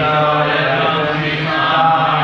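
A group of voices chanting a line of Sanskrit verse in unison on a steady, held pitch: the congregation repeating the line after the leader.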